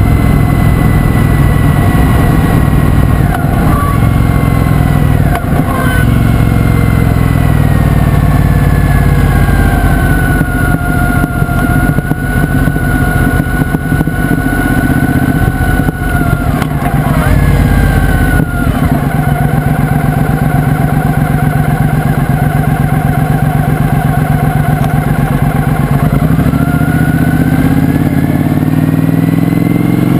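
2009 Triumph Speedmaster's 865 cc parallel-twin running through a stainless exhaust on the move. The engine note falls off over the first ten seconds and then holds steady. Past the middle the revs change quickly twice, and near the end they rise under acceleration.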